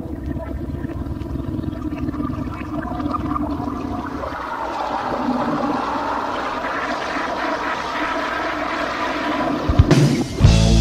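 Opening intro of a 1980s hard rock recording: a sustained, swelling wash of noise with steady low tones, slowly growing louder. Near the end a few low thumps lead into the full band.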